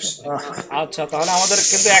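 A person speaking, with a hiss over the voice from about a second in.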